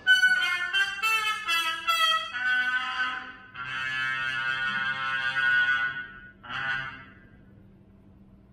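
Solo trumpet played unaccompanied: a quick run of short notes, then two long held notes and a last short note about six and a half seconds in, after which the sound fades away.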